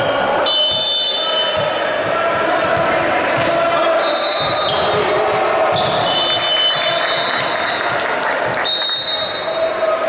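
Indoor volleyball rally: a ball being struck and sneakers squeaking on the hardwood floor, over the voices of players and spectators echoing in the hall.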